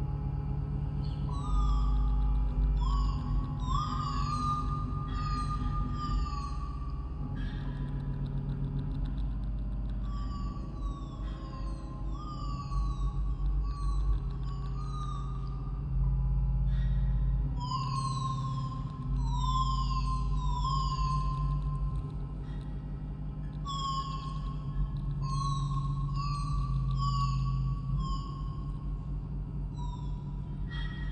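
Contemporary music for piano and live electronics: a deep sustained drone and a held electronic tone that steps and slides in pitch. Above them are many short, quick falling glides in the high register.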